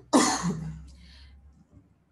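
A woman coughs once, a sudden burst that fades within about half a second.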